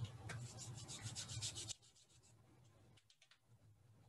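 Faint, quick scratchy rubbing over a microphone with a low hum, which cuts off abruptly a little under two seconds in, leaving near silence.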